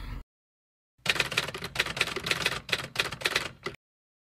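Typewriter key-clacking sound effect: a quick, uneven run of clicks that starts about a second in and stops just before the end, over a digitally silent background.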